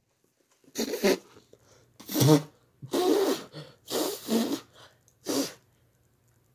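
A dog giving about five short, breathy woofs with gaps between them, in answer to a command to speak.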